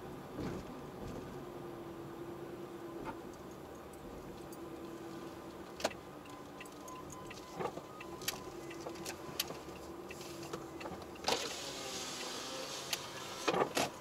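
Car's engine and tyres running at low speed, heard from inside the cabin, with a faint wavering hum and scattered short clicks and knocks, and a brief rush of noise about eleven seconds in.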